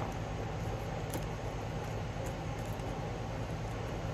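Steady low hum and hiss of background room noise, with a faint click about a second in.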